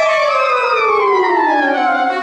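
Clarinet and saxophone playing sustained notes that slide steadily downward in pitch over about two seconds in a long glissando, settling onto a low note at the end.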